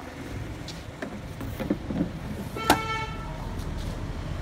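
A short vehicle horn beep about two and a half seconds in, over a low steady street background.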